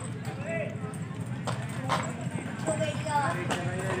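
Horse's hooves knocking on hard ground as it shifts and steps, a few separate strikes at uneven intervals, with people talking in the background.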